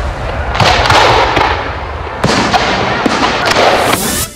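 Fireworks going off: a loud, dense crackling with several sharp bangs spread through it.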